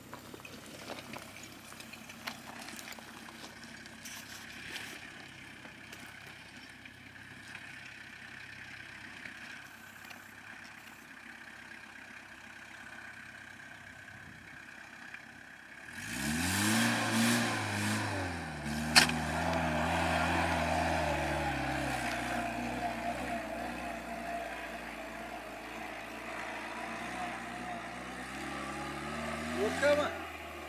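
An ARO IMS off-road 4x4's engine, faint at first, revs up loudly about halfway through as the vehicle climbs a grassy slope. A single sharp knock follows a few seconds later. The engine note then holds steady and slowly fades as the vehicle moves away.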